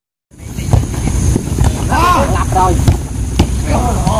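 Sound starts abruptly about a third of a second in: wind rumbling on a phone microphone over an outdoor football pitch, with players calling out to one another and a few sharp knocks scattered through.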